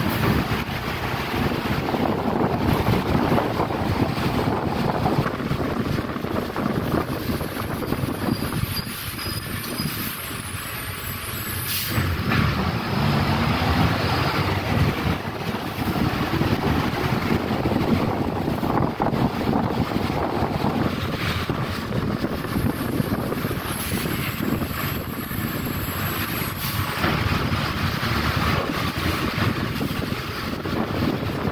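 City bus running along the road, heard from inside: steady engine and tyre noise on wet pavement, with the engine pitch rising as it accelerates about halfway through and a couple of sharp knocks from the body.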